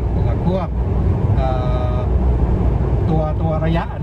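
Steady low road and engine rumble inside the cabin of a moving car, under conversation.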